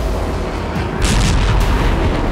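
Explosions: a continuous heavy low rumble with a sharper blast about a second in, over background music.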